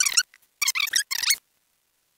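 Audio of a 20x time lapse played at speed: the voice, fast-forwarded into a stream of high-pitched, squeaky, warbling chirps. It stops about one and a half seconds in.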